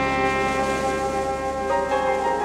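Live jazz quintet of trumpet, alto saxophone, piano, double bass and drums playing a long held chord, the trumpet and alto sax sustaining notes over a steady low bass note. Some of the notes shift near the end.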